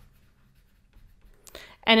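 Faint scratching of a stylus writing out a word in handwriting, followed near the end by a breath and the start of speech.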